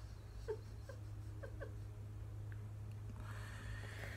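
Faint, short, squeaky sounds: a few stifled giggles held in behind a hand, four quick falling squeaks in the first two seconds, over a steady low hum.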